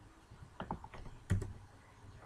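Computer keyboard keystrokes: a few quick taps, then a louder one just past the middle.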